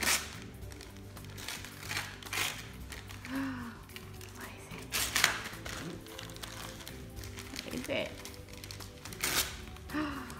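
Wrapping paper crinkling and tearing in short bursts as a Siberian husky tugs at a wrapped present with its mouth, the loudest bursts about five seconds in and again near the end. Background music plays throughout.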